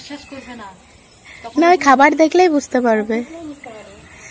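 Mostly speech: a woman talking, loudest from about one and a half seconds in, over a steady high-pitched hiss.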